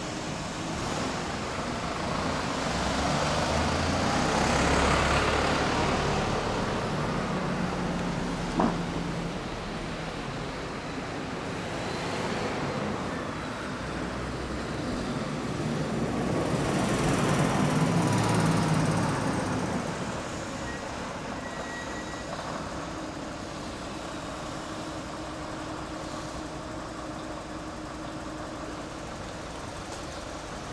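Street traffic passing. Two vehicles swell up and fade away, one about five seconds in and a louder one near eighteen seconds, over a steady traffic hum. A single sharp click comes about nine seconds in.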